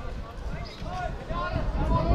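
Distant shouts and calls of footballers on the pitch, several short voices starting about half a second in, over a steady low rumble.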